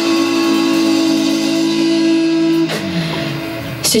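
Live rock band, with electric guitars, bass and drums, holding a sustained chord at the end of a song. About two-thirds of the way through, the chord dies away with the low notes sliding down, and a sharp final hit comes just before the end.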